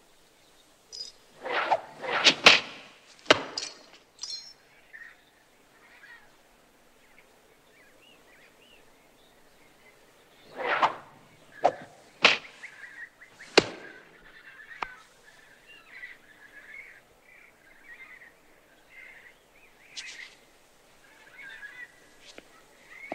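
Small throwing darts whooshing through the air and striking apples with sharp thunks: a cluster of hits in the first few seconds, and another run of them about ten to fifteen seconds in.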